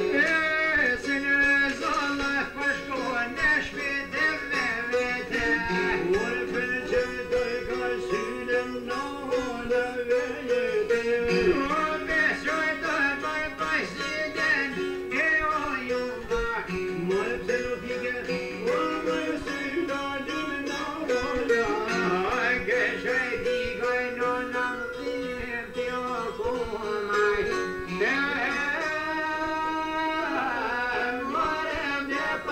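Two plucked long-necked lutes, one small and one larger, playing a folk tune together while a man sings with a wavering, ornamented melody.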